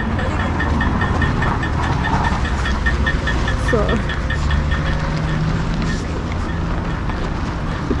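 Outdoor street noise: a steady low rumble of traffic, with a light, regular ticking several times a second that fades out near the end.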